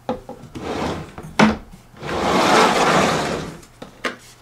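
Handling sounds of a plastic quadcopter and its foam-lined hard case: short rubs, a sharp knock about a second and a half in, then a longer rubbing scrape lasting over a second.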